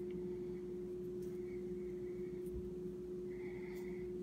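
Quiet room with a steady low hum, with a few faint small clicks.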